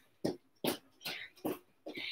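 A woman breathing hard between exercises: about four short, quiet exhalations roughly half a second apart.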